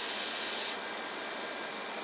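Steady flight-deck noise of a Boeing 747SP taxiing, a rush of engine and air-conditioning air. A high hiss in it cuts off suddenly under a second in, and the overall sound drops a little.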